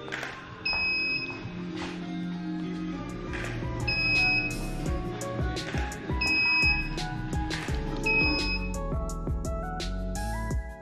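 Background music with a steady beat, with a short, high beep-like tone repeating about every two seconds.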